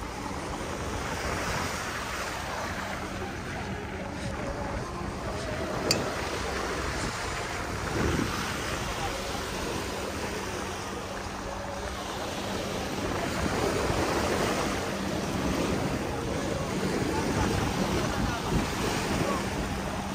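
Sea surf washing onto a sandy beach, swelling and ebbing, with wind buffeting the microphone.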